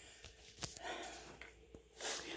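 Faint handling of a plastic-wrapped grocery pack: a few light clicks and a short, soft rustle of the plastic wrapping about a second in.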